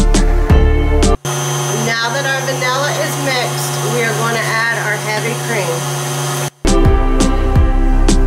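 Background music with sharp plucked strokes, broken for about five seconds from about a second in by a KitchenAid stand mixer's motor running steadily as it beats batter, before the music returns.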